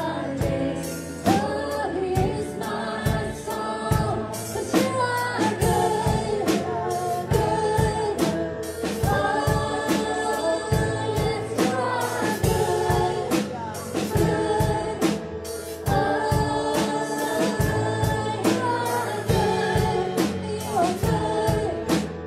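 Gospel worship song: women's voices singing in harmony into microphones, backed by keyboard and a steady percussive beat.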